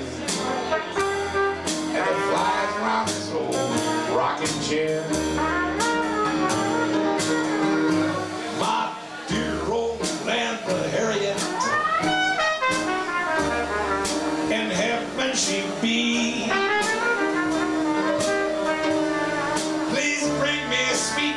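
Live Dixieland jazz: a trumpet plays an instrumental chorus over a rhythm section of upright bass and drums, with cymbal and drum strokes keeping a steady beat.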